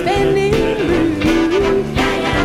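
A female vocalist singing with a jazz big band backing her, holding long notes that slide up and down in pitch.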